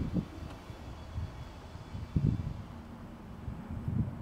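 Wind buffeting the microphone, a low rumbling noise, with one short low sound about two seconds in.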